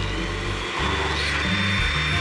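Countertop blender running steadily with a faint high whine, blending pumpkin chunks and cream in a glass jar.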